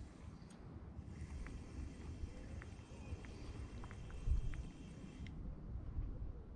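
Faint handling noise of a spinning rod and reel during a lure retrieve: a low rumble with a light whirr and scattered small ticks, and a soft thump about four seconds in.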